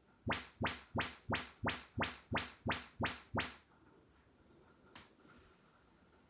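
Audyssey MultEQ XT32 calibration test tones from a Denon AVR-X3200W receiver played through a loudspeaker: ten quick chirps, about three a second, each sweeping up from deep bass to high treble. A single click follows about five seconds in.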